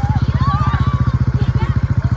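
An engine running steadily with a fast, even low pulse, with faint voices over it.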